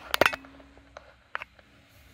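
A quick cluster of sharp clicks and knocks just after the start, then single fainter clicks about a second in and a little later, from objects or the camera being handled. A faint steady low hum sits underneath.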